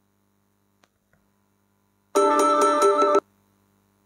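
A mobile phone's short electronic ringtone or notification jingle, about a second long, playing a quick melody with a fast pulsing beat about two seconds in.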